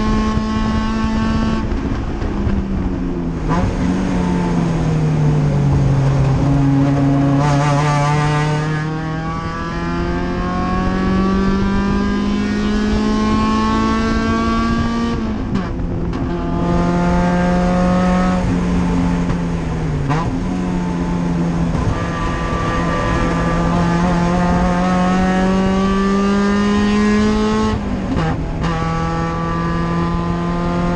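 Race car engine heard from inside the cockpit, driven hard around a circuit. The engine note falls over the first few seconds as the car slows. It then climbs under full acceleration, with three upshifts, each a sudden drop in pitch, about halfway through, about two-thirds through and near the end.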